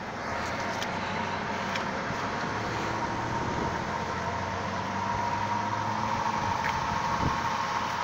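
A 1997 Cadillac DeVille's Northstar V8 idling steadily, heard from outside the car, with a thin steady whine over the low hum. It grows slightly louder in the second half.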